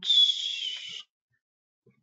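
A high-pitched whistling tone with a hissy edge, wavering slightly, lasting about a second and cutting off suddenly.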